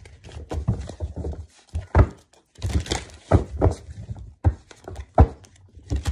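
Tarot deck being handled and shuffled on a table: irregular thunks and knocks with brief rustling, the loudest knocks about two, three and five seconds in.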